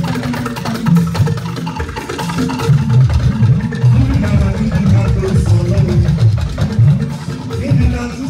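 Live band music with a moving bass guitar line, drums and hand percussion keeping a steady dance beat, and voices singing through microphones.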